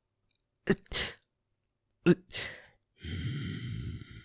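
A man's voice making non-speech sounds: two short, sharp bursts of breath about a second and a half apart, then a held vocal sound about a second long near the end.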